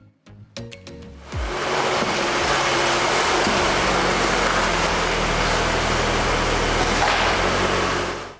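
A short plucked music phrase dies away. About a second in, a deep falling boom opens a loud, steady rushing noise with a low drone beneath it, and this fades out near the end. It sounds like an edited intro sound effect laid under the music.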